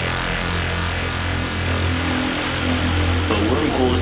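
Opening of a psychedelic trance track: a sustained low synth drone under a wash of noisy synth texture, with no beat yet. A sampled spoken voice begins near the end.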